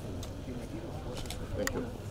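Quiet voices of a group of people talking, with a few sharp clicks, the clearest about three quarters of the way through.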